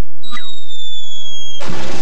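Cartoon sound effects: a thin falling whistle that slides slowly down in pitch for about a second and a half, cut off near the end by a sudden noisy crash, the landing of the falling object.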